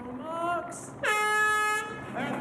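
Race starting horn sounding once, a steady single-pitched blast of just under a second beginning about a second in, signalling the start of a swim wave. A brief voice call comes just before it.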